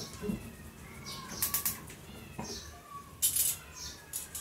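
Metal kitchen tongs clicking in two short clusters, about a second and a half in and again just after three seconds, over faint, wavering high-pitched animal-like calls.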